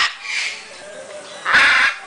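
Hyacinth macaw squawking harshly: a brief squawk near the start and a loud, longer one about one and a half seconds in.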